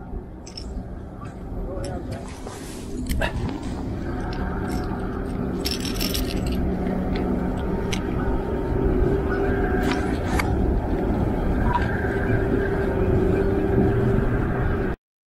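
An engine running steadily, a low drone with a steady hum in it that grows louder over the first few seconds and then holds. Now and then a sharp click of steel fishing pliers working a crankbait's treble hook.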